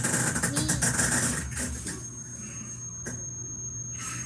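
Breathy, muffled laughter picked up through webcam and headset microphones, in bursts during the first half and quieter after. A faint steady high electronic whine and a low hum run underneath.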